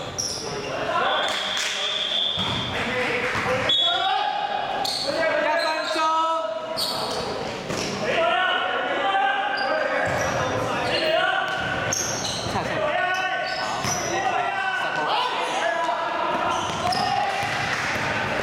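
A basketball bouncing on a gym floor during play, with players' voices calling out and echoing in a large indoor sports hall.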